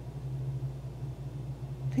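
Room tone with a steady low hum and faint background hiss.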